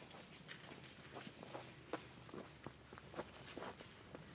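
Faint hoofbeats of a pony walking on dry, straw-strewn dirt, mixed with a person's footsteps. It is an irregular patter of soft steps, a few each second.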